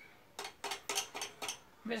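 A quick run of about six metallic clicks and clinks over roughly a second as hands work the starter pulley of an old Yanmar KT30 two-stroke engine; the engine is not running. A man's voice starts near the end.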